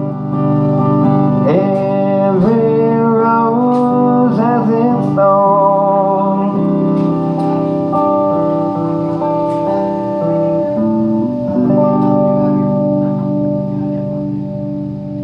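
Electric guitar played through an amplifier, ringing out the closing chords of a song: bending notes over the first few seconds, then long held chords.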